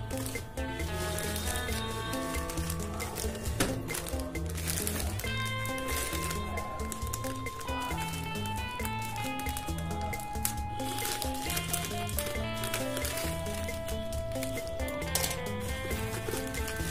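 Background music: a melody of held notes over a steady, repeating bass beat.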